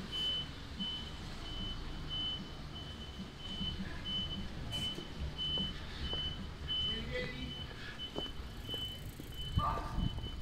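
Electronic warning beeper, of the kind fitted to a reversing vehicle, sounding a steady high beep a little over twice a second, over a low rumble of street noise.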